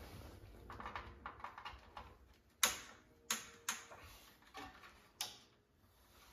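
Clicks and taps from handling an LED video light panel with metal barn-door flaps while connecting its power cable: soft taps at first, then four sharp clicks over the last few seconds, the first the loudest.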